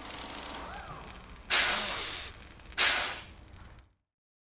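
Whoosh sound effects for an animated logo: two sudden swishes, about a second and a half in and again near three seconds, each fading away.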